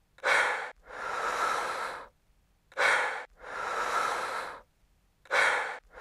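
A person breathing heavily and slowly: long, softer breaths alternate with short, sharper, louder ones, about three cycles in all.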